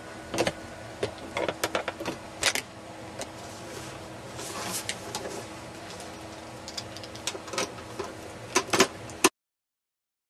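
Handling noise of a DVD player's sheet-metal case being turned over and worked on with a screwdriver: scattered clicks and knocks, a brief rustle, and a quick cluster of louder clicks near the end. The sound then cuts off abruptly.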